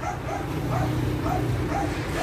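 A dog yapping repeatedly, short barks about three a second, over a steady low hum.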